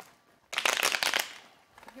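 Tarot cards being shuffled: a quick rattling riffle of cards lasting under a second, starting about half a second in.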